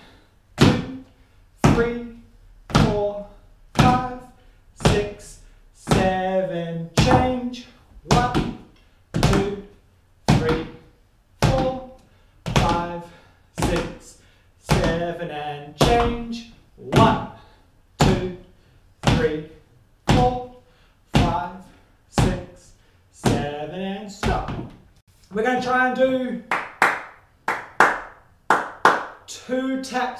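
Tap shoes striking a wooden floor with the ball of the foot, one tap on every beat at about one a second in a steady rhythm. The taps come faster in the last few seconds. Each tap comes with a short voiced syllable, as if the beat is being counted or sung along.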